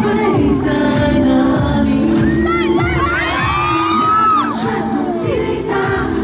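Live pop song played loud over a concert sound system with a pulsing bass beat. From about two seconds in until about five and a half seconds in, many fans scream and cheer over the music.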